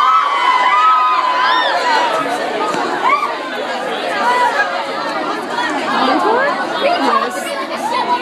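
Concert crowd in a hall, many overlapping voices chattering and calling out at once. One long high tone fades out about two seconds in.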